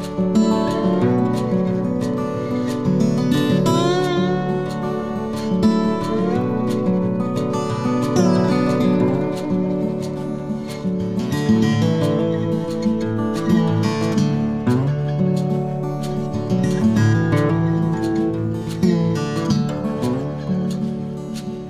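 Instrumental background music led by acoustic guitar, plucked and strummed at an even pace.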